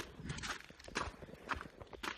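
Footsteps of a person running outdoors: a quick, uneven series of sharp steps.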